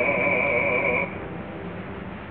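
An operatic voice in a 1930s live opera recording holds a note with wide vibrato, then breaks off about a second in. A quieter stretch follows, with hiss and a steady low hum.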